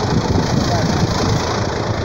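John Deere 5078E tractor's four-cylinder diesel engine running steadily close by.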